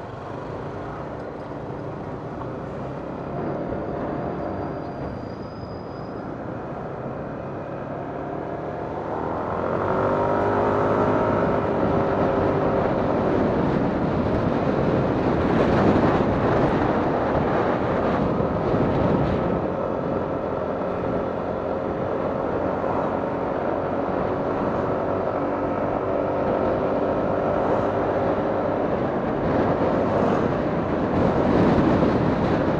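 Yamaha 155cc scooter engine idling in traffic at a stop, then pulling away about nine seconds in with its engine note rising. From then on, wind noise on the microphone is heard under the engine while riding.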